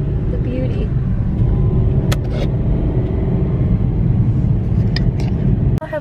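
Road noise inside a moving car's cabin: a loud, steady low rumble with a few sharp clicks, cutting off suddenly near the end.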